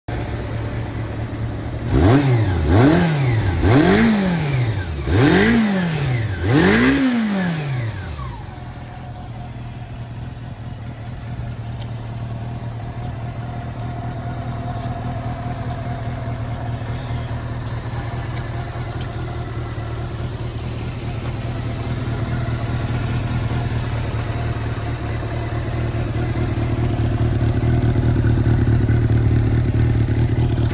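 1992 Honda CB400 Super Four's inline-four engine idling, blipped five times in quick succession a couple of seconds in, each rev rising and dropping back. It then settles to a steady idle that grows louder toward the end.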